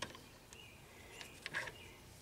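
A few faint clicks and a short metallic clatter about one and a half seconds in as a part is handled at a metal lathe, with faint high chirping underneath.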